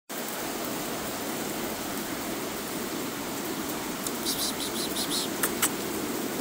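Steady rain falling, an even hiss with no break. A few short light clicks come about four to five and a half seconds in.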